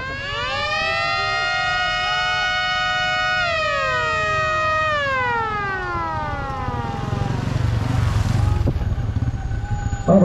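Siren of an arriving police escort winding up to a steady wail during the first second, holding for a few seconds, then winding down. As it fades, the low engine rumble of the motorcycle outriders and police car grows louder near the end as they approach.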